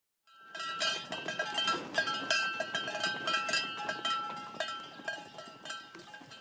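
Metallic jingling and clanking: irregular sharp strikes, several a second, each leaving a short ringing tone. It is loudest over the first few seconds and fades toward the end.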